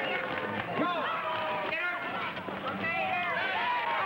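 Spectators shouting and cheering at a basketball game, several voices over one another.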